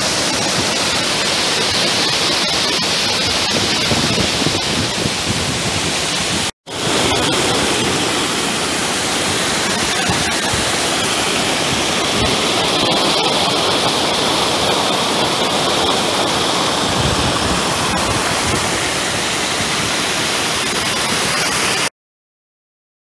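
Loud, steady rush of whitewater as a spring-fed stream pours down a cascade close by. The sound breaks off for a split second about six and a half seconds in, then goes on unchanged.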